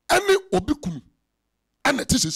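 A man's voice close to a microphone: a quick run of loud, short vocal bursts in the first second, then dead silence, then another burst starting just before the end.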